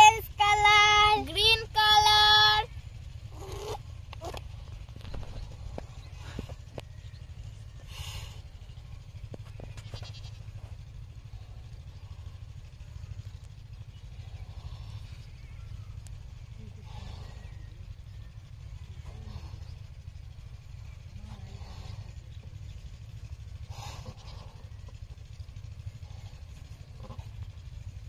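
A short, loud, high squealing call with rising glides in the first three seconds. Then balloons are blown up: faint breathy puffs, a few seconds apart, over a low steady rumble.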